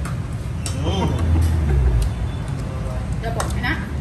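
Low rumble of passing street traffic that swells about a second in and eases off after two seconds, with a short hum from a voice over it and a few brief spoken sounds near the end.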